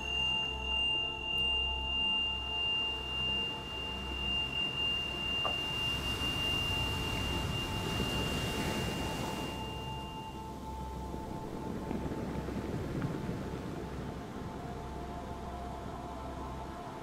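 Ambient meditation background music: sustained drone tones with a pulsing low hum, and a high, pure ringing tone that fades out about ten seconds in. A soft rushing swell rises and falls in the middle.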